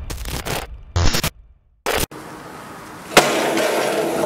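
Stuttering, glitchy electronic sound effects at the end of an intro jingle, cutting in and out, with a short silence and one last burst about two seconds in. About three seconds in, a sharp click gives way to steady background noise with a low hum.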